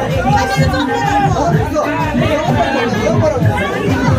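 Dance music with a steady beat under overlapping chatter from a crowd of dancing guests.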